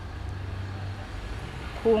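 Low, steady rumble of a motor vehicle at a distance, easing off about a second in; a woman's voice starts again at the very end.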